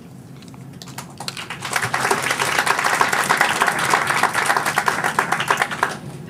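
Audience applauding, beginning about a second in and growing fuller a second later.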